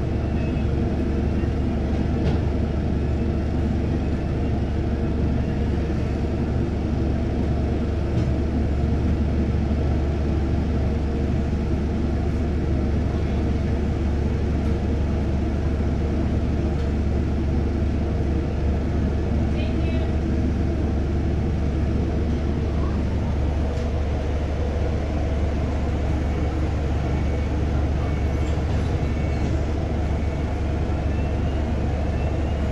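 Double-decker bus running slowly in traffic, heard from inside on the upper deck: a steady low drone from the drivetrain that holds level throughout.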